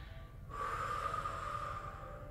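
A woman's long audible exhale, starting about half a second in and lasting about a second and a half, as she breathes out on a Pilates-style movement from a four-point kneel.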